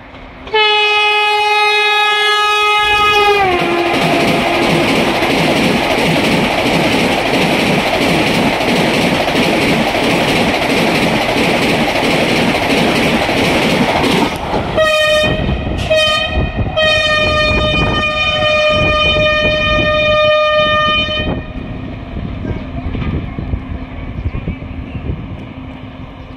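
Vande Bharat Express running through a station at about 130 km/h with its horn sounding. The horn drops in pitch as the train passes, then about ten seconds of loud rushing and wheel clatter follow. About fifteen seconds in a train horn sounds again, a few short blasts then one long blast, before the noise dies down.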